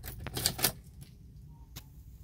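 A quick run of sharp clicks and rattles in the first second, then quieter, with one more click near the end, over a steady low rumble inside a car cabin.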